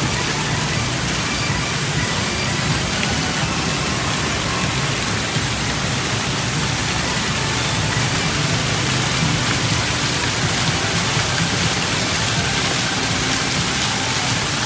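Steady rush and splash of water from small fountain jets and an artificial rock waterfall pouring into a shallow garden pond, running continuously.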